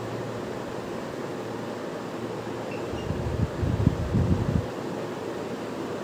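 Steady background hiss, with a run of low bumps and rumbles about three to four and a half seconds in, as a man moves about at a whiteboard.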